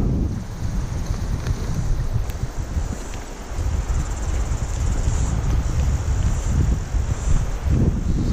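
Wind buffeting the camera's microphone in a heavy, uneven rumble, over the steady rush of a shallow river.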